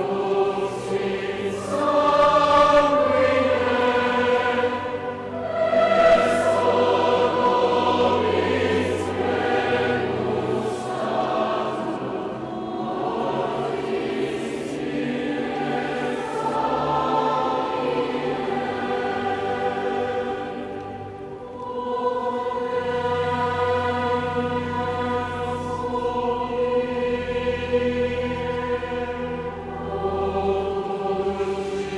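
Massed youth choirs singing in unison and harmony, sustained slow-moving sung phrases with a short break between phrases about two-thirds of the way through, in the echoing space of a large basilica.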